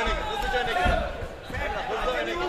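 Men's voices shouting in a large, echoing hall, over a few dull thuds from the kickboxing ring.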